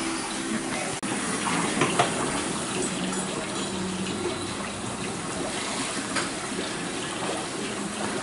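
Steady rush of running water from a pedicure spa chair's foot basin.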